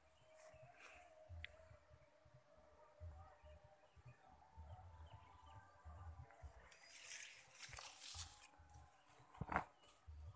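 Near silence: faint outdoor ambience with soft handling rumble and leaf rustling as a camera is moved among avocado branches, rustling a little more around seven to eight seconds in, and one short louder brush or knock near the end.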